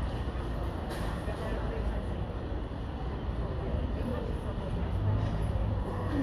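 Steady low rumble of outdoor background noise, with a brief click about a second in.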